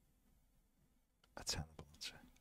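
Near silence, then a brief soft whisper from a man about one and a half seconds in, with a few faint clicks around it.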